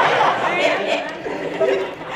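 Speech: young women talking into handheld microphones, voices overlapping at times.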